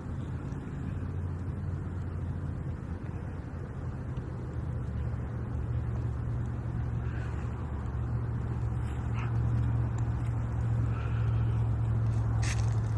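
A steady low rumble like a motor vehicle running, growing slightly louder toward the end, with a few faint brief rustles.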